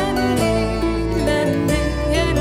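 Waltz music: a Celtic harp plucks the melody and chords over long, sustained low notes from a bowed cello.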